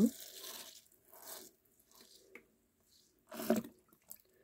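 Water sprinkling from a watering can's rose onto potting soil in small plastic pots, a soft spatter that fades out within the first second and a half. A brief louder noise follows near the end.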